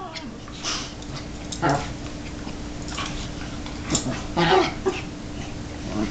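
An Akita and a Chihuahua play-wrestling, with short dog vocal sounds coming in brief bursts, about six of them, the loudest about four and a half seconds in.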